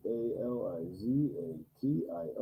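A man's voice humming or sounding a wavering, drawn-out tone for about a second and a half, rising and falling in pitch, then breaking off. Ordinary speech resumes near the end.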